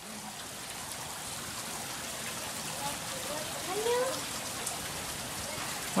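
Steady sound of running, splashing water from the exhibit's pool and rockwork.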